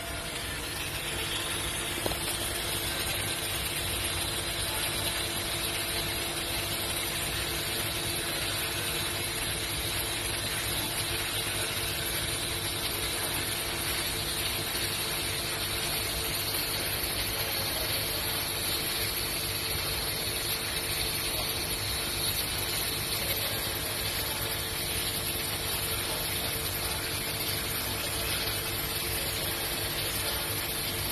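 TIG welding arc burning steadily on a steel pipe while filler rod is fed in by hand, an even hiss.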